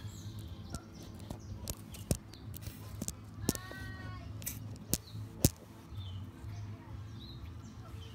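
Outdoor ambience with a steady low rumble, faint scattered bird chirps and several sharp clicks, with one short pitched call about three and a half seconds in.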